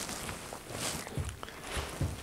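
Faint rustling and a few soft knocks as a stiff foam hike pad and padded neoprene shorts are handled on a table.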